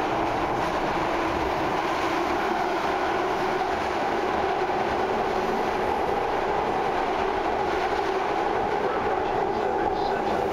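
BART train running through a tunnel, heard from inside the passenger car: steady, unbroken noise from the wheels, rails and car.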